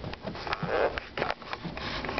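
A string of short, irregular knocks and rubbing noises on wooden dock boards as the camera is moved low along them, with a brief breathy, sniff-like sound just before the middle.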